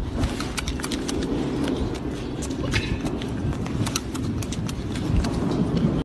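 Golden snub-nosed monkey eating berries: irregular sharp chewing and smacking clicks over steady low background noise.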